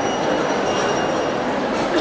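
A steady din of many indistinct voices: a crowd murmuring in a hall.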